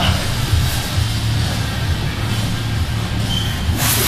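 Background music with a steady low bass, and a short burst of noise near the end.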